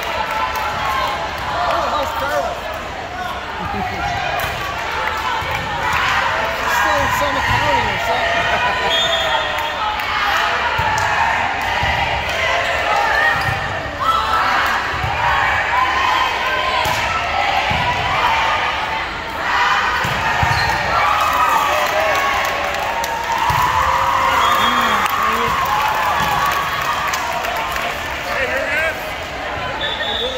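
Gym hall chatter: many girls' voices talking and calling over one another, with a volleyball bouncing on the hardwood floor every few seconds.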